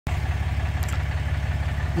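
Pickup truck engine idling steadily: a low, even hum.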